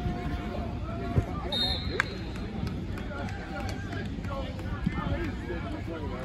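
Indistinct voices of players and coaches talking and calling out across a football practice field, over a steady low rumble, with a couple of sharp knocks about a second and two seconds in.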